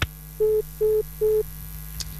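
Three short, identical beeps of a single steady tone in quick succession over a telephone line, the tones heard when a call ends after the network's unanswered-call recording. A faint steady hum lies underneath.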